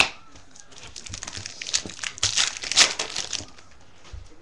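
Trading cards being handled and slid against one another, a scratchy rustling with small clicks that is loudest in the second half.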